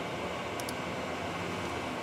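Steady room noise from a running fan, even and unchanging, with a couple of faint clicks about two-thirds of a second in.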